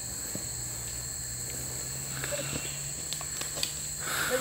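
Steady high-pitched drone of insects, with a low hum beneath it and a few faint footfalls on a dirt path in the second half.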